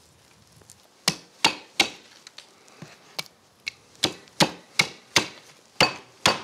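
Butcher's cleaver chopping through the rib ends of a wild boar rack: about a dozen sharp strikes, two to three a second, starting about a second in.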